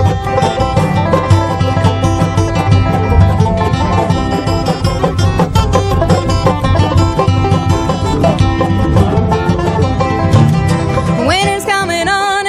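Live bluegrass band playing a fast instrumental break on banjo, acoustic guitar, dobro, mandolin and upright bass, with quick picked notes over a steady bass. A singing voice comes back in near the end.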